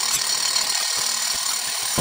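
Hand-held hammer drill boring a hole into a concrete cooling-tower leg with a long masonry bit, running steadily.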